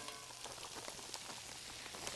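Frozen chopped turnip greens sizzling in hot bacon grease in a cast iron skillet: a faint, steady crackle.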